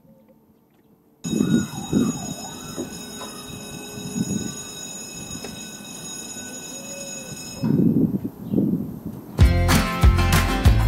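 Drawbridge warning signal ringing steadily at several fixed pitches over a low rumble while the barrier arm lifts; it starts suddenly about a second in and stops at around eight seconds. Strummed acoustic guitar music comes in near the end.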